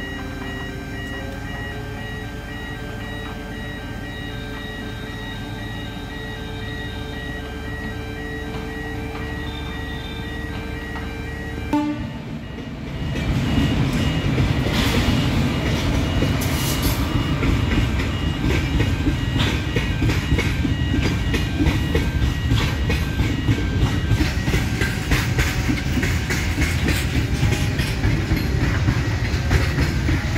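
For about the first twelve seconds, a steady engine hum of construction machinery with faint, repeated high tones. Then, after a cut, a train hauled by an electric locomotive passes close by, much louder, its wheels clattering over the rails.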